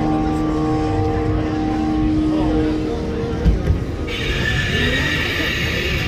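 Sustained droning chord from a Halloween scare zone's loudspeaker soundtrack over crowd murmur; the chord fades about three seconds in. About four seconds in, a steady hiss starts abruptly and runs to the end.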